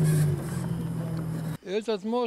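A motor vehicle engine runs with a steady low hum, which cuts off abruptly about a second and a half in.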